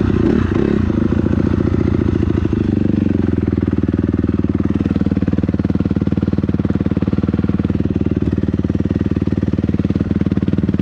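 Dirt bike engine coming off the throttle, then settling from about three seconds in into a steady idle with an even, rapid pulse.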